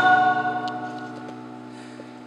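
A live band's sustained accompaniment chords ring out and fade away steadily during a gap in the singing.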